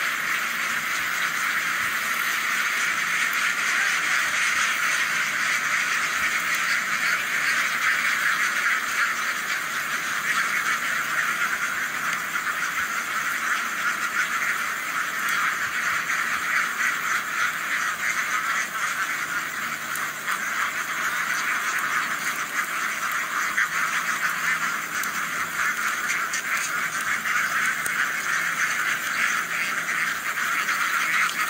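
A large flock of domestic ducks quacking all together, hundreds of overlapping calls merging into one continuous chatter that holds steady throughout.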